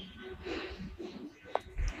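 Soft breathing and faint mouth sounds of a person close to a phone microphone, with one short click about one and a half seconds in.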